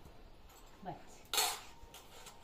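A metal spoon knocks against a stainless-steel plate once, about a second and a half in, with a short metallic ring after it.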